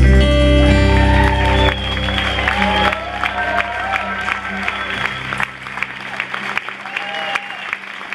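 A live band's final chord on acoustic guitar and electric upright bass rings out and fades over the first few seconds. The audience claps and cheers over it, and the applause carries on as the music dies away.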